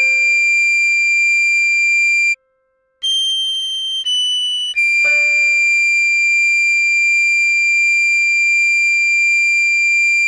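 Recorder playing a slow melody in pure, steady tones: a held D, a short break, two brief higher notes (G then F#), then a long held D again. A soft piano chord sounds under the start of each long D and dies away.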